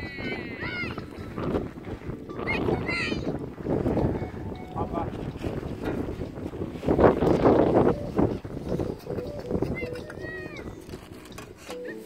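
Wind gusting over the microphone: a rough low rumble that rises and falls and is strongest about seven seconds in, with faint distant voices now and then.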